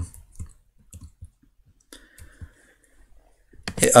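A few faint, scattered clicks and taps from a laptop touchpad and keys.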